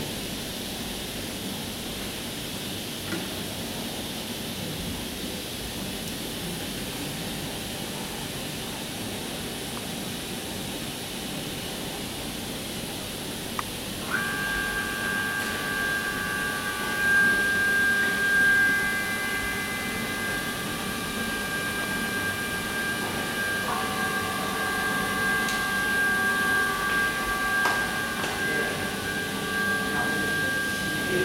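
Steady hiss of running equipment. About halfway, after a click, a steady high-pitched electronic whine of several tones starts suddenly, and a lower tone joins it later.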